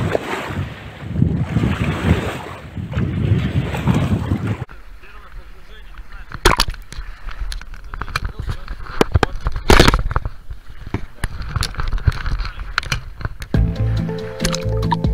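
Outdoor wind-and-water noise on the microphone, then a sudden switch to the sound recorded by a camera in a sealed waterproof housing under water: a muffled hush broken by sharp knocks and clicks, the two loudest about two and five seconds after the switch. Music comes in near the end.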